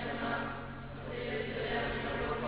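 Many voices singing a liturgical chant of the Syriac Catholic Mass together, a slow held melody.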